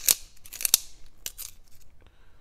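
Carpenter pencil being twisted in a handheld plastic sharpener, the blade shaving the wood in a few short, crisp scrapes, the loudest just after the start and at about three-quarters of a second. The blade is tearing up the pencil's wood rather than cutting a clean point.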